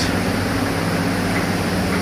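Steady hiss with a low electrical hum under it, while a pan of mustard gravy bubbles on the stove.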